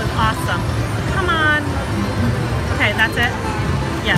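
Rising Fortunes slot machine spinning its reels in a free game, with short gliding electronic tones in a few clusters as the reels run and come to a stop, over a steady casino background din.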